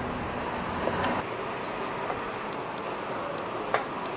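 Steady background ambience, an even hum and hiss without voices, with a few faint ticks in the second half and a small click near the end.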